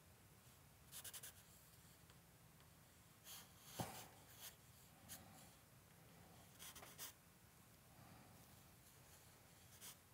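Faint scratching of a compressed charcoal stick on drawing paper: short strokes in small clusters, with one sharper tap a little under four seconds in.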